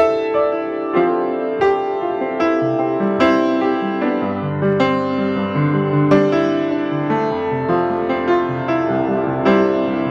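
Otto Bach upright piano played with both hands: a steady run of struck chords that ring on under one another, with lower bass notes coming in a few seconds in.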